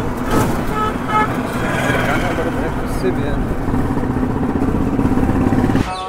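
Wind and road noise rushing past while riding in an open-sided electric rickshaw in traffic, with a few short, high horn beeps about a second in.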